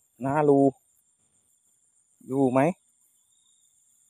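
Faint, steady, high-pitched trilling of night insects such as crickets, with a man speaking two short phrases over it.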